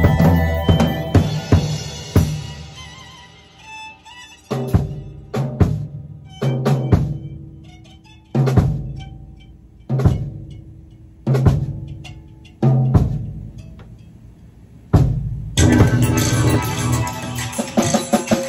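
Live funk band of drum kit and keyboards playing. A couple of seconds in the groove breaks down into separate accented hits about a second apart, each a drum hit with a low chord ringing out after it. The full groove comes back in about three seconds before the end.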